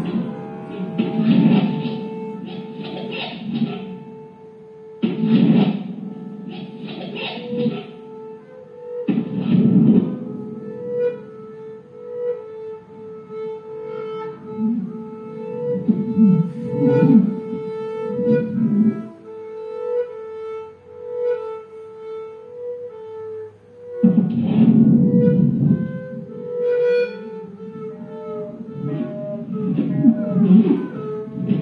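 Free-improvised music on double bass and two guitars. A held tone pulses about once a second through the middle. It is broken by loud, noisy bursts several times in the first ten seconds and again about 24 seconds in.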